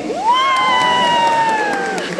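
A spectator's single long, high-pitched cheering shout. It swoops up sharply at the start, then is held and slowly sinks in pitch for nearly two seconds.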